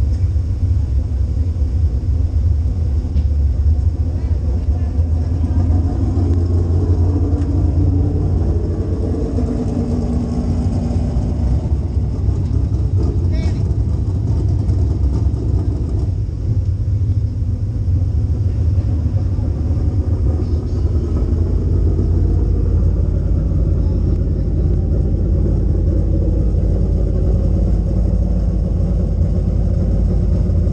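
Dirt late model's V8 engine idling with the car standing still, a steady low rumble heard from inside the cockpit.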